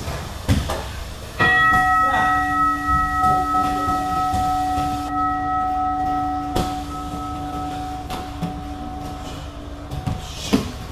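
A bell is struck once about a second and a half in and rings out, fading slowly over about eight seconds: the gym's round bell. A few sharp knocks from the sparring sound around it, one about six and a half seconds in.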